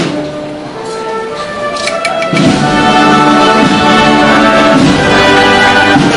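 Brass band playing a slow processional march, swelling from held notes to full volume about two seconds in.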